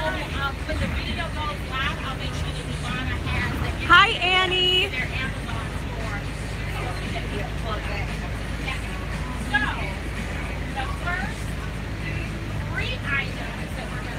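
Steady engine and road rumble inside a moving bus, under the scattered chatter of several people, with one loud voice about four seconds in.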